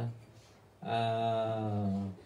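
A man's voice holding one long, level-pitched vowel for about a second, a drawn-out hesitation sound between sentences, after a short silence.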